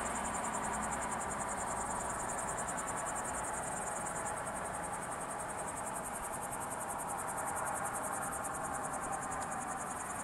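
Crickets in a continuous high-pitched, finely pulsing trill, over a steady low hiss of background noise.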